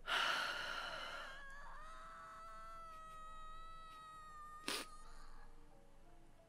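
A long breathy sigh from a woman, followed by a steady held tone with overtones lasting about three seconds, and a brief click near the end.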